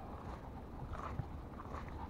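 A freshly landed tilapia flopping on grass, a few short rustles and slaps about a second in and again near the end, over a steady low rumble.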